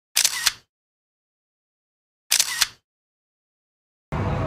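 Camera shutter click sound effect, twice, about two seconds apart, each a quick double click, with dead silence between.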